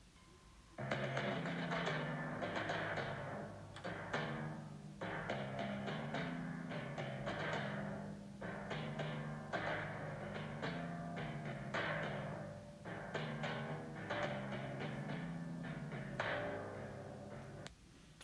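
Recorded timpani solo: a run of struck kettledrum notes that move up and down in pitch, starting about a second in and stopping just before the end.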